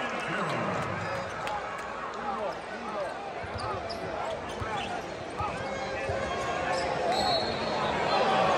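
A basketball dribbled on a hardwood court during live play, with the arena crowd chattering around it.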